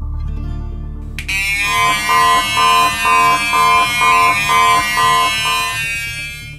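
Electronic gas leak detector alarm beeping about twice a second, nine or so beeps, signalling that gas is leaking at the pipe joint. Background music plays underneath.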